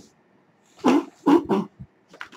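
Three short dog barks in quick succession.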